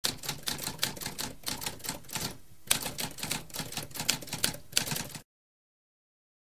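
Typewriter typing: a rapid run of keystroke clacks with a brief pause about halfway, stopping a little after five seconds.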